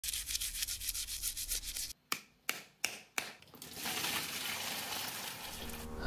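Fast back-and-forth scrubbing strokes for about two seconds, then about four sharp separate clicks, then a steady hiss.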